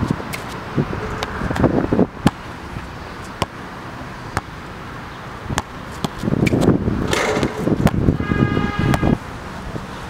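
Basketball bouncing on an outdoor hard court, single thuds spread out over several seconds. It is followed by a louder stretch of knocking and rattling from about six and a half to nine seconds, with a brief ringing tone near its end, as the dunk attempt reaches the hoop.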